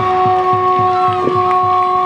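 Supporters' drum beating quickly and evenly under one long held horn note, a fanfare from the stands celebrating a goal.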